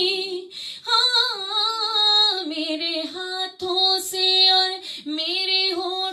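A woman singing a naat solo, with long drawn-out notes that waver with vibrato and slide between pitches. She breaks briefly for breath about half a second in, then begins a new phrase.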